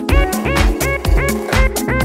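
Minimal techno DJ mix: a steady kick drum at about two beats a second under short, repeating synth notes that slide up in pitch as each one starts.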